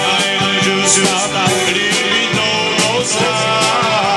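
Live dance-band music played through a Peavey PA speaker, with a steady beat and singing.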